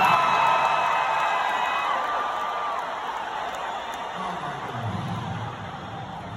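Arena crowd cheering and whooping. Loud held whoops at the start fade over the first two seconds or so, and the cheer dies down toward the end.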